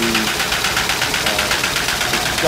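MBO roll-fed finishing line (unwinder, sheeter and folders) running at just under 500 feet a minute: a steady mechanical clatter with a rapid, even pulse of about ten beats a second.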